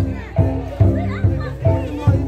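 A gong and drum ensemble playing a steady beat, about two and a half ringing strokes a second over deep drum beats, with people's and children's voices in the crowd.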